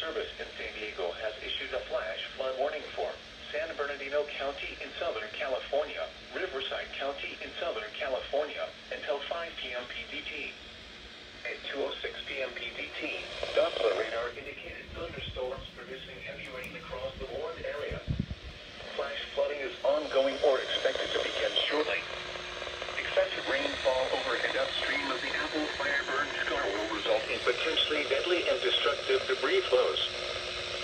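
NOAA Weather Radio's synthesized voice reading out a flash flood warning through weather-radio speakers. There are a couple of low thumps about halfway through.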